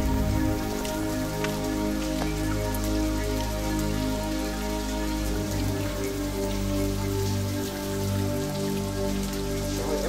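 Slow ambient music of long held tones that form a sustained chord shifting slightly partway through, with a light patter of drips or rain-like ticks over it.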